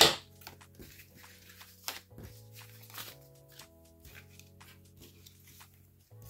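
Soft background music with steady held low tones, over light clicks and rustles of cardboard tissue-box tabs and paper being handled on a tabletop. One sharp click at the very start is the loudest sound.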